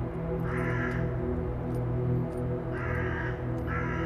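Crows cawing three times, harsh calls about half a second each, over background music with a steady low drone.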